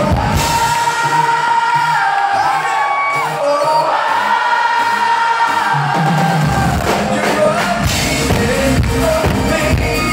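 Live pop band with a male lead singer: the drums and bass drop out for a few seconds, leaving held sung and keyboard notes, then the full band comes back in about six seconds in.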